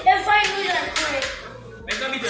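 Voices over background music, cut off suddenly near the end.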